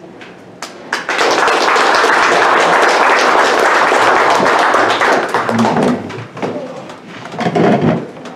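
Audience applauding for about four seconds, a dense crackle of many hands that then dies away.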